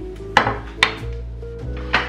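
Background music with steady low notes, broken by three sharp clinks of dishes and a metal tin being handled as grated cheese is scooped onto a plate: one about a third of a second in, one just under a second in, and one near the end.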